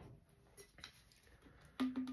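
Near silence with two faint light taps, a little after half a second and just under a second in.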